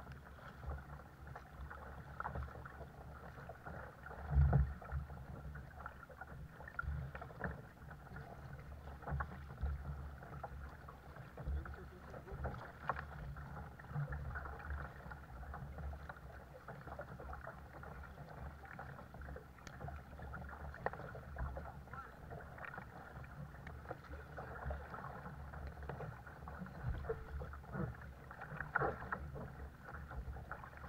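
Double-bladed paddle strokes in calm sea water beside a sit-on-top kayak: irregular dips, splashes and drips, with low knocks and rumble from the kayak hull. The loudest knock comes about four seconds in.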